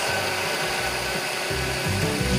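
Electric countertop blender running steadily, its motor whirring as it blends a thick fruit smoothie. Music comes in near the end.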